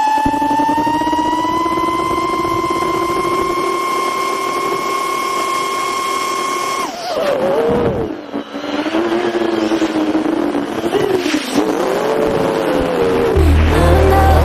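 5-inch FPV quadcopter's brushless motors and propellers whining, a high tone held steady for about seven seconds, then swooping up and down in pitch as the throttle changes through acrobatic flying. Background music with a heavy beat comes in near the end.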